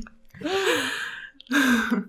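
A woman's breathy laugh, one drawn-out gasping exhale whose pitch rises and then falls. Speech begins near the end.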